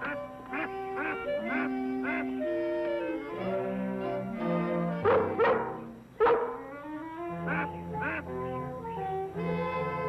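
Canada geese honking repeatedly, the loudest calls around the middle, over orchestral background music with held notes.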